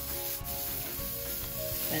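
A steak sizzling steadily on a hot grill grate.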